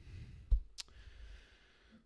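A dull thump about half a second in, then a sharp click, from hands handling a desk and laptop.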